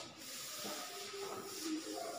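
A chalkboard duster being rubbed across a blackboard, wiping off chalk writing, heard as a faint steady hiss.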